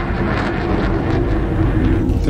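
Spaceship engine sound effect for a TV space shot: a deep, steady rumbling drone with a held mid-pitched tone running over it.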